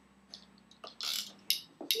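A few light clicks and a short rattle from the plastic toys of a baby activity jumper being handled.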